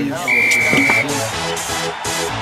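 A single steady whistle blast lasting under a second. Just after it, electronic dance music with a steady pulsing beat begins.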